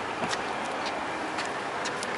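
Footsteps on pavement: a few faint ticks over a steady outdoor hiss.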